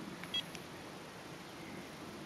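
A single short electronic beep from a Garmin eTrex handheld GPS about a third of a second in, followed by low background hiss.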